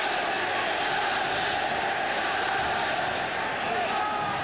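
Large football stadium crowd, a steady mass of voices with chanting.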